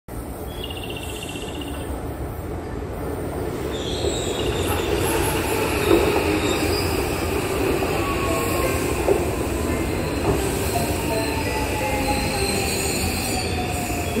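Electric commuter train pulling into the adjacent platform track and braking, its wheels rumbling and its motor whine falling slowly in pitch as it slows.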